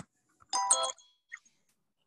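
A short chime about half a second in: a quick cluster of ringing notes lasting under half a second, like a doorbell or notification ding-dong.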